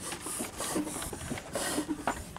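1949 Blackstone 38 hp stationary diesel engine running, an even, rhythmic mechanical clatter at about five hissing beats a second.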